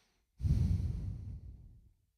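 A man's long, heavy sigh of disappointment blown straight into a handheld microphone, starting about half a second in and trailing off, the breath hitting the mic with a low rumble.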